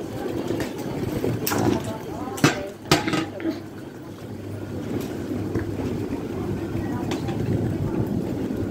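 Station platform sound: a steady low hum from the stopped train, indistinct passenger voices, and a few sharp clacks in the first three seconds, the loudest at about two and a half and three seconds in.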